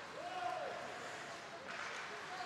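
Faint hockey-arena ambience, with a distant drawn-out shout: one voice rising in, held for about half a second, then falling away. A fainter call comes near the end.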